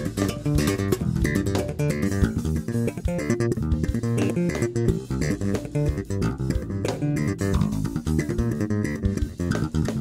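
Four-string electric bass played with the double-thumb slap technique: a fast, busy groove of percussive slapped notes. It runs over a programmed drum track playing a straight sixteenth-note beat.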